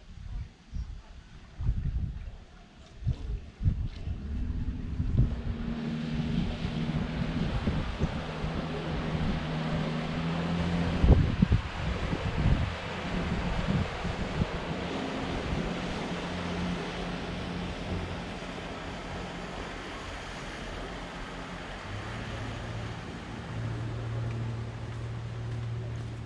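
A motorboat's engine running as the boat passes along the river, its hum loudest about halfway through. Wind buffets the microphone in gusts during the first few seconds.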